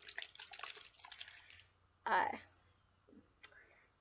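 Water and baby-powder mix sloshing inside a plastic Tommee Tippee baby bottle as it is moved about, a run of quick splashy sounds lasting about a second and a half. A single sharp click follows near the end.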